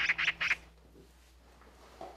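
Three quick, harsh bird squawks in the first half second: a comic sound effect.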